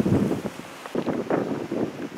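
Wind buffeting the camera microphone in uneven, rumbling gusts.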